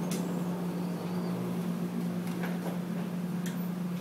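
A steady low room hum, with a few light clicks and rustles as papers are handled on a desk.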